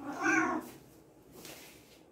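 A domestic cat meows once, a short call that rises and falls in pitch, lasting about half a second.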